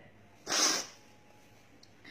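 A woman sniffing once through her nose while crying, a short sharp sniff about half a second in.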